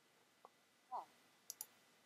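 Near silence, with a faint spoken 'oh' about a second in and two quick computer-mouse clicks close together about halfway through.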